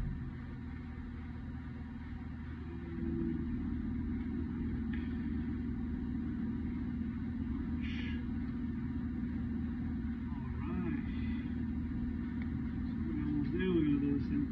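Steady low hum of machinery in a plant room. About eight seconds in, the jaws of a wire stripper give a short rasp as they pull the insulation off a conductor.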